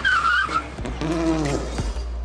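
Synthesized logo sting: held pitched tones that bend slightly, over a steady low hum, with a brief wavering high tone at the start and a few short ticks.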